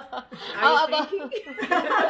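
Women chuckling and laughing, mixed with talk.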